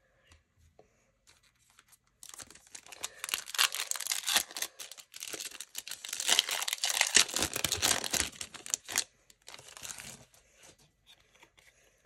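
Trading card pack wrapper being torn open and crinkled by hand, starting about two seconds in, with a long run of tearing and crinkling that trails off into lighter rustles near the end.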